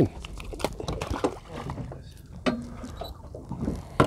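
A few short light splashes and knocks as a small gurnard is let go over the side of the boat and drops back into the sea, with water lapping at the hull.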